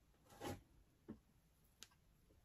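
Near silence with a few faint, brief handling noises as a wooden stir stick is worked through wet resin: a soft rustle about half a second in, a small thud a little later, and a light tick near the end.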